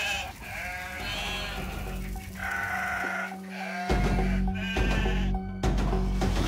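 Sheep bleating, several short calls one after another, over a dramatic music score with a steady low drone.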